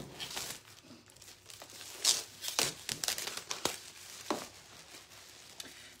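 Plastic wrapping being pulled off a wooden panel, crinkling and crackling irregularly, with the sharpest crackles between about two and four seconds in.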